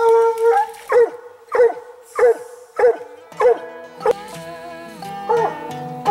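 Coonhound's long howl tailing off, then six short barks about every 0.6 s, the way a hound barks at a tree. Music comes in about halfway and runs on under the last barks.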